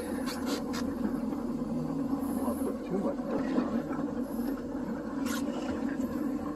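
Boat's engine running steadily, a low even hum, with a sharp click about five seconds in.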